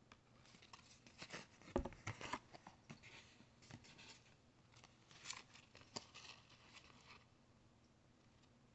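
Trading cards being handled: faint, irregular rustling and flicking of card stock as cards are put down and a handful picked up and fanned out, with one sharper knock about two seconds in.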